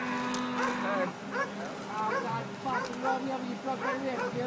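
Indistinct human voices, with no clear words: people talking and calling out in the background, with one drawn-out held sound in the first second.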